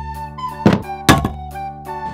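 Light children's background music, broken twice by a sharp thunk sound effect, the two about half a second apart near the middle.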